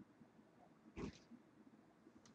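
Near silence: room tone, with one brief faint sound about a second in.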